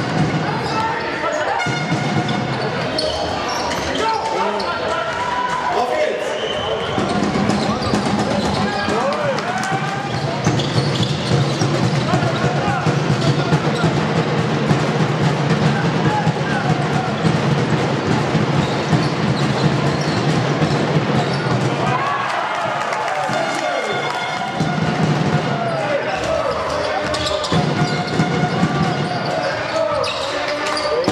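Basketball being dribbled on a hardwood sports-hall floor during live play, with short squeaks from shoes on the court and voices carrying through the hall.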